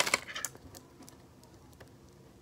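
Plastic beads on a homemade pipe-cleaner tangle fidget clicking against each other as it is twisted in the hands: a quick cluster of clicks at the start, then a few faint scattered ones.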